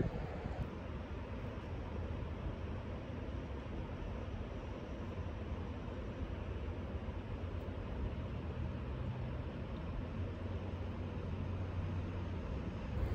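Steady low rush of a flowing river, with light wind on the microphone and no distinct events.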